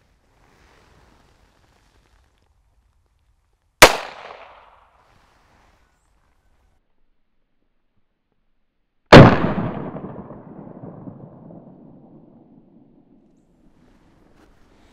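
Gunshots from a North American Arms mini revolver firing .22 Short hollow points: a sharp report about four seconds in, then a second, louder report about five seconds later with a long fading tail.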